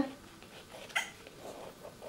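Black pen drawing on kraft paper, faint, with one short sharp sound about a second in.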